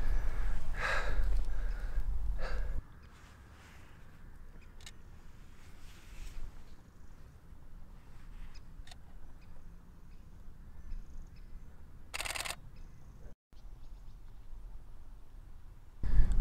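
Wind buffeting the microphone with a low rumble for the first three seconds, then a quiet field with a few faint clicks. About twelve seconds in, a Canon 7D Mark II's shutter fires a short rapid burst.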